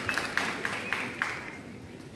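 A crowd in a large gym clapping in unison, about four claps a second, dying away about a second and a half in.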